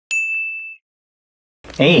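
A single high, bell-like ding right at the start, ringing for under a second before it cuts off into dead silence.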